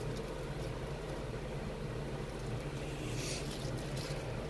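A steady low background hum, with a brief soft hiss about three seconds in.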